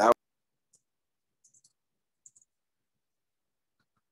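A short, loud burst of a man's voice right at the start, then a handful of faint computer mouse clicks over the next two and a half seconds.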